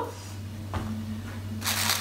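Hands handling cloth-wrapped notebook covers in a box lined with tissue paper: a soft bump about a second in, then a brief burst of rustling near the end, over a low steady hum.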